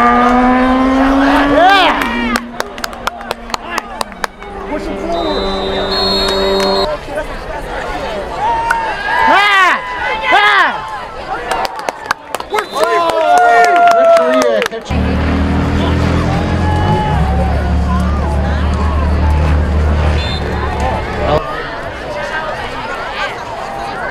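Stadium noise at a high school football game: the crowd shouting and cheering, with held brass-band notes and a run of sharp hits a couple of seconds in. A low held note sounds from about halfway until a few seconds before the end.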